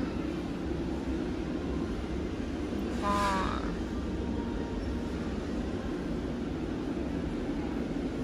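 Steady low hum of a large store's indoor background noise, with a short voice about three seconds in.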